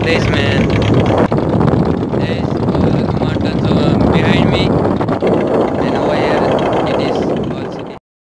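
Loud wind buffeting the microphone on the deck of a moving motor boat, with the boat's engine running underneath. Brief voices are heard a few times.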